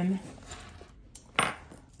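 Soft rustling of items being handled in a handbag, then a single sharp hard click of a small object knocking against something about a second and a half in.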